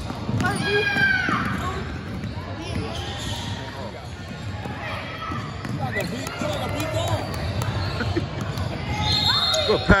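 A basketball bouncing on a gym floor during play, with repeated short knocks, under the shouts and voices of players and spectators, echoing in a large hall. A louder knock comes just before the end.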